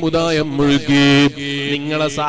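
A man chanting religious verse in a drawn-out melodic line, holding long notes with short breaks between phrases.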